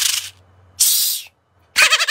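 Two short hissing bursts, each about half a second long and about a second apart. Near the end a man breaks into a loud, rapid, high laugh.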